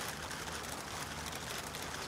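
Faint, steady background noise with no distinct event: room tone.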